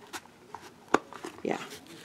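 Hinged metal frame of a vintage brocade eyeglass case being pried open: faint handling clicks, then one sharp snap just under a second in as the frame opens.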